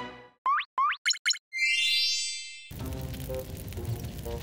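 Cartoon transition sound effects: two quick rising zips, two short pulsing beeps, then a bright shimmering chime that fades out. After that, soft background music comes in with a hiss under it.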